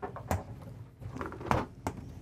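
A few short clicks and knocks from a residential refrigerator's doors being opened and handled, the loudest about a second and a half in.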